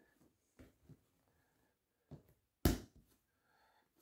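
Faint kitchen handling noises, with one sharp knock about two and a half seconds in.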